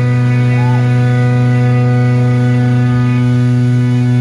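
A loud, steady, buzzy drone held on one low note with many overtones, unchanging throughout: a sustained note or feedback from the band's amplified instruments through the stage amplification.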